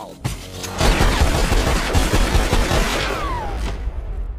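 Cartoon gunfire sound effect: a rapid, continuous volley of pistol shots starting about a second in and lasting about two seconds, ending in a short falling whistle.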